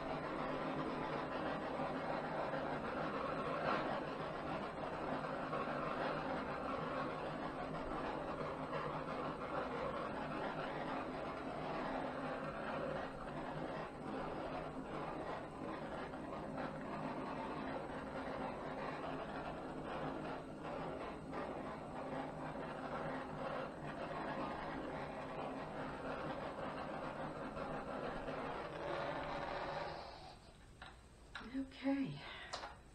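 Handheld gas torch flame hissing steadily as it is played over a wet acrylic pour, heating the silicone oil so that cells come up. The hiss cuts off at the very end.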